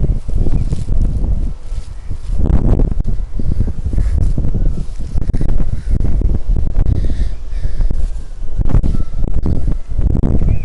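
Wind buffeting the microphone: a loud, uneven low rumble that comes and goes in gusts, with light handling clicks.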